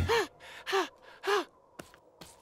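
A cartoon character's voice making three short, breathy vocal sounds about half a second apart, each rising and then falling in pitch.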